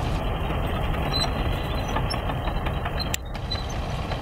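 Chetra T-20 crawler bulldozer's diesel engine running steadily under load as it pushes a blade of soil, with a brief sharp click about three seconds in.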